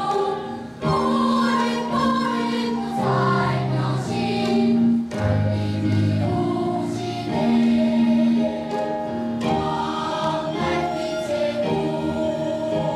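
A mixed children's and adults' choir singing a Korean gugak-style song in long held notes, with a short pause for breath just under a second in.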